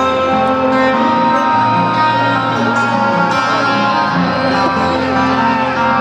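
Acoustic guitar played live through a concert PA over steady sustained chords, with the low bass note changing a couple of times; a loud recording from the audience.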